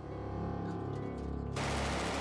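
Background music with held chords; about one and a half seconds in, a machine gun opens up with rapid automatic fire over the music.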